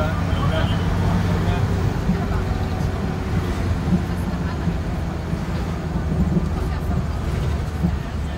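Engine and road noise of a moving vehicle as heard from inside it: a steady low drone. Indistinct voices run under it.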